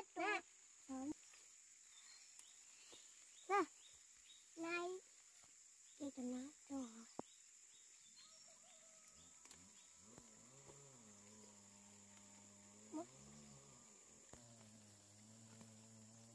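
Short, scattered words and calls from young children's high voices during the first half, over a thin steady high-pitched whine; a faint low steady drone comes in about halfway through and runs on.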